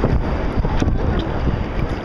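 Wind buffeting the microphone: a loud, rough, uneven noise.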